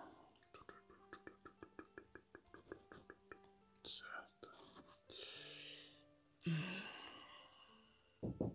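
Faint, soft background music with a steady high tone and scattered held notes. Early on there is a quick even run of light clicks lasting about two and a half seconds, and later a few breathy whispers or sighs.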